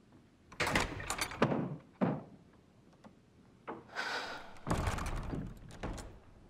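Footsteps and a heavy carved wooden door being opened and shut, in two bouts of knocks and thuds, the heavier one near the end.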